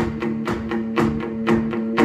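Electric guitar strummed in a steady rhythm, a held chord ringing under sharp strokes about four times a second.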